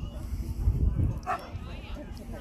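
A dog barking briefly, a couple of short barks about a second or more in.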